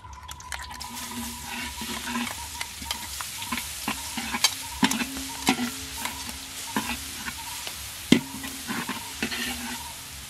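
Food sizzling in a hot pan while a spatula stirs it, scraping and clacking irregularly against the metal, with the loudest knock about eight seconds in.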